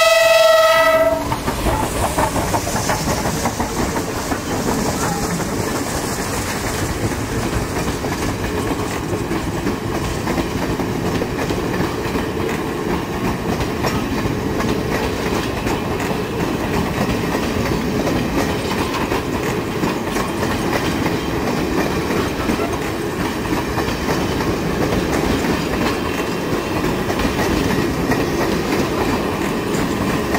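A QJ-class steam locomotive's whistle sounds on one steady pitch and cuts off about a second in, followed by the steady rumble of its passenger coaches rolling past on the rails.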